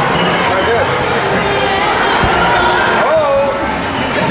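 Trampoline bounces thumping, one clear thump about halfway through, over the steady shouting and chatter of many children echoing in a large hall.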